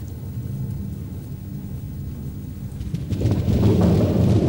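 Low, thunder-like rumble laid over time-lapse footage as a soundtrack effect, swelling louder about three seconds in.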